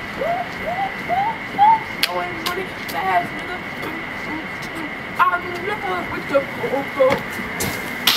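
People's voices: a laugh, then a run of short rising vocal calls, with more scattered laughing and voice sounds after. A few sharp clicks and a faint steady high-pitched whine sit underneath.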